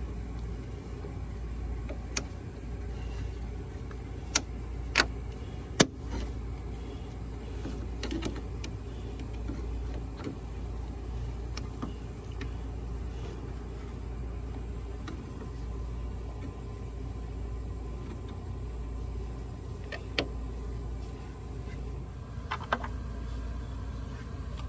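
A handful of sharp metal clicks from needle-nose pliers and a hose clamp being worked onto a radiator hose, most in the first six seconds and a couple near the end, over a steady low background rumble.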